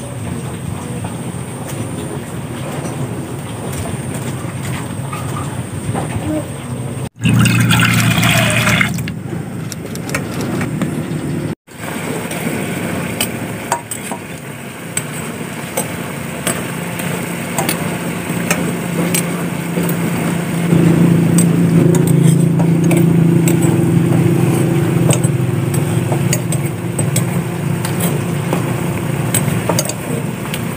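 Water at a rolling boil in a pot, bubbling with small pops, while an egg is lowered into it on a ladle. A steady low hum joins in about two-thirds of the way through.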